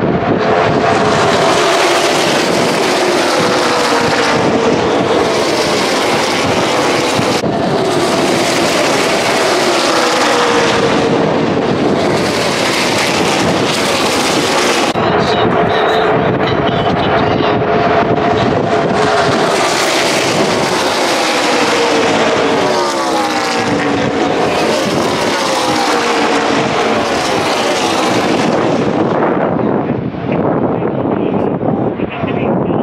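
Pack of NASCAR Xfinity Series stock cars racing past at full speed, their V8 engines a loud continuous drone. The engine pitches fall in repeated waves as cars go by.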